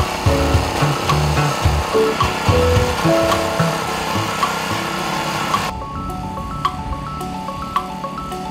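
Background music, with the engine noise of a small petrol walk-behind power tiller running under it for the first five or six seconds, then stopping abruptly so that only the music remains.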